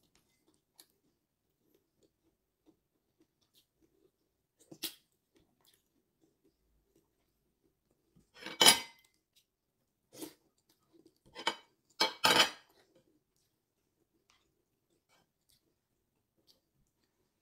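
Whole cooked prawns being peeled by hand: a handful of short crackles of shell snapping and breaking, the loudest a little past the middle and a quick cluster of them shortly after.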